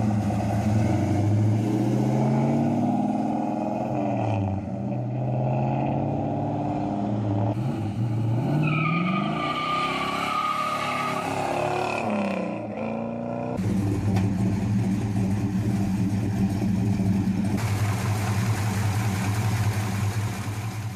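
A 1966 Plymouth Satellite's 426 Hemi V8 being driven slowly. Its pitch rises and falls as it revs and shifts, and a high thin tone falls in pitch for about two seconds near the middle. After a cut about two-thirds of the way in, the engine runs at a steady speed.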